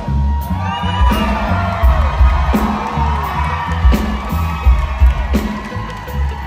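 A live band plays a slow, heavy intro with deep bass and a big drum hit about every second and a half, while the audience cheers and whoops.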